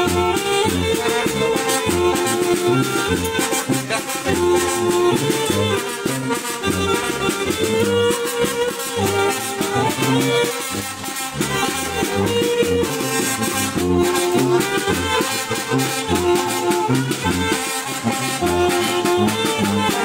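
Brass band playing, a sousaphone's bass notes pulsing under the horns, with percussion keeping the beat.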